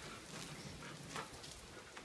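Faint light rain pattering, with a few soft ticks.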